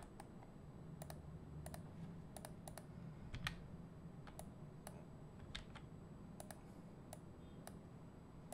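Faint, irregular clicks of a computer mouse and keyboard, a dozen or more scattered unevenly, as parts of a node script are selected and grouped on screen.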